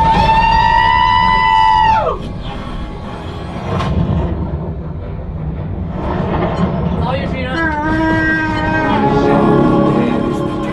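Motion-simulator ride soundtrack of music over a steady low rumble, with a rider's long high whoop in the first two seconds that drops in pitch as it ends, and another whooping cry about seven seconds in.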